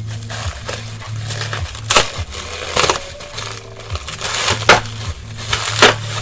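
Plastic bubble wrap crinkling and crackling as it is pulled away from a cylinder head, with four sharper cracks spread through.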